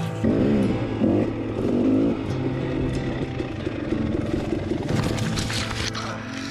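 A dirt bike engine revs in short bursts that rise and fall, then keeps running roughly as the bike works over a log. There is a brief clatter about five seconds in.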